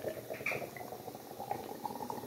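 Stout poured from an aluminium can into a pint glass, gurgling steadily, the pitch creeping upward as the glass fills.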